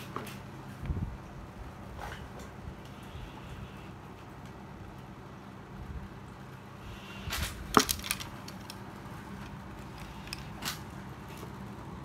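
Scattered clicks and taps from a fishing rod and metal calipers being handled on a tile floor while the rod tip is measured, the sharpest click about eight seconds in, over a steady low hum.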